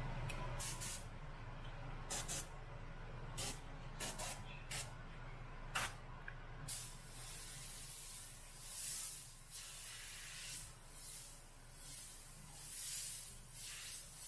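Omni 3000 airbrush spraying paint: a string of short hissing spurts for the first six seconds, then a near-continuous hiss that swells and eases about once a second as the strokes of black lettering are laid down.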